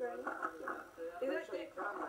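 People talking, the words indistinct.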